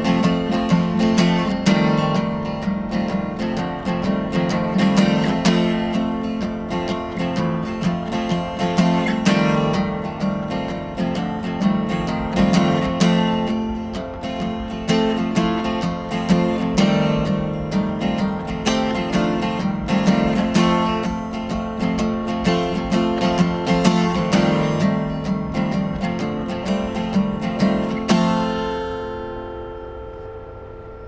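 Solo small-bodied acoustic guitar played steadily, with strummed chords and picked notes and no singing. Near the end the playing stops and a last chord rings out and fades.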